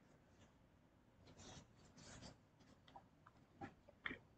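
Near silence: room tone with a few faint, brief rustles and soft clicks.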